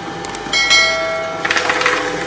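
Twin-shaft metal shredder running with a steady hum as its blades catch a foam sponge. A ringing tone sounds from about half a second in, then gives way to rough crackling from about a second and a half as the sponge is drawn into the cutters.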